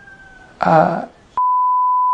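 A short spoken word, then a steady single-pitch censor bleep that cuts in abruptly about one and a half seconds in and holds, blanking out the speech.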